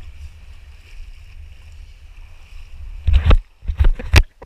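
Wind rumbling on a handheld action camera's microphone over a steady wash of sea water, then from about three seconds in a run of loud knocks and sloshes as the camera is handled while wading through shallow water.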